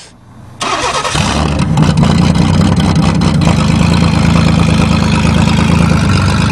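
A 1994 Chevrolet Cavalier's engine, on a fresh replacement motor, comes in suddenly about half a second in, builds within a second and then runs steadily and loud. The engine is running well.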